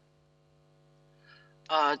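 Faint, steady electrical mains hum on a remote video-call audio line: a low tone with a few evenly spaced higher overtones. A woman's voice begins near the end.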